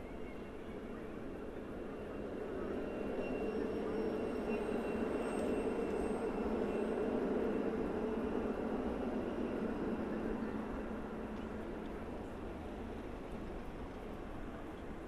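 Articulated electric tram passing close by on street rails: a rolling rumble that swells over a couple of seconds, stays loud through the middle and then fades away, with faint steady high tones above it.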